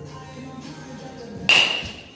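Baseball bat striking a pitched ball once, about one and a half seconds in: a sharp ping that rings briefly, over background music.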